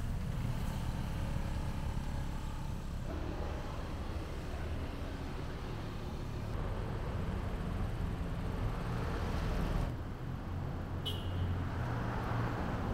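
Street traffic noise: motorbike and car engines make a steady low rumble. A short high-pitched beep comes near the end.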